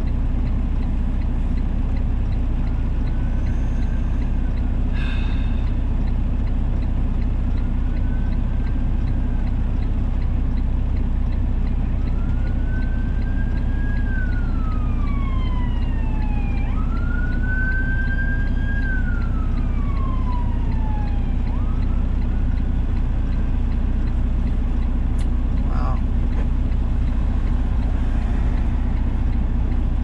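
A police siren wailing in slow rising and falling sweeps, loudest a little past halfway and then fading away, over the steady low rumble of the idling semi-truck's engine.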